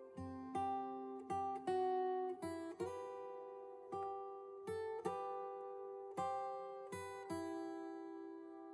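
Background music: a plucked guitar picking out notes and chords, each one ringing and fading before the next.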